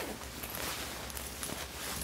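Faint rustling of fabric and contents as hands rummage inside a diaper bag, with a few small ticks.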